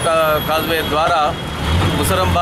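A man speaking for about the first second over road traffic, then a steady low engine drone near the end as motor scooters and motorbikes pass.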